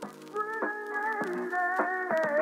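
Intro theme music: a gliding melodic line over sustained chords, getting louder about half a second in.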